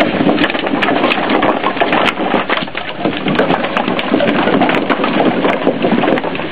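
Split firewood sliding out of a truck's dump bed and tumbling onto a growing pile on the ground: a dense, continuous clatter of wooden knocks.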